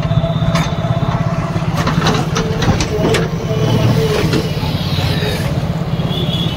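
A vehicle engine running steadily with a fast, even pulse, with street traffic around it.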